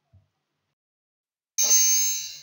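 A bright, ringing chime sound effect that starts suddenly near the end and fades out. It marks a slide transition.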